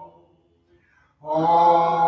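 Congregation singing a hymn a cappella, with no instruments. A held note fades out just after the start, there is a pause of under a second between lines, then the voices come back in on a new held note.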